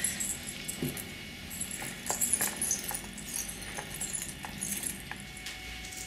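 Small silver rings and porcelain links clinking and jingling lightly as a just-polished necklace piece is handled over a tumbler barrel of small steel polishing shot, in irregular short clinks that are busiest around the middle.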